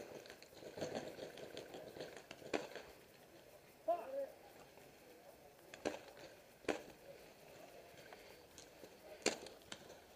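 Paintball markers firing across the field: five single sharp pops at uneven intervals, with a brief distant shout about four seconds in.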